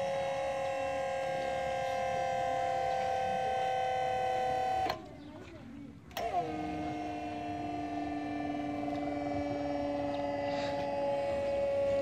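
Battery-powered electric motor driving the hydraulic pump of an auger-flight forming press, running with a steady whining hum whose pitch sags slightly as it works. It cuts out about five seconds in, starts again a second later and runs on.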